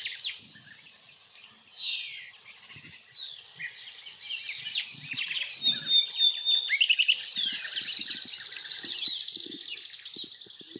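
European bee-eaters calling: repeated short rolling calls that slur downward, becoming a denser overlapping chatter from about seven seconds in.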